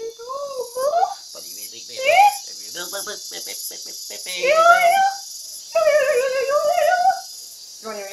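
A man and a woman trading gibberish: nonsense syllables with exaggerated, sliding sing-song pitch, and two longer drawn-out wavering vocal sounds around the middle, used as a voice exercise to open up the throat.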